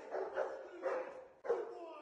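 A Laizhou Hong (Chinese red dog) barking faintly, a few short barks about half a second apart.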